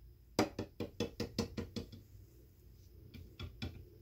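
A quick run of knocks, about six a second for over a second, then three more near the end: hard plastic toys tapping against a glass tabletop as they are moved about.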